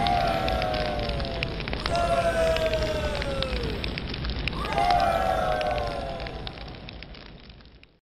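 A bonfire crackling and popping, with three long falling tones sounding over it, one near the start, one about two seconds in and one just under five seconds in. The whole fades out toward the end.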